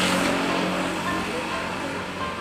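Road traffic: a passing vehicle's engine and tyre noise, loudest at first and gradually fading.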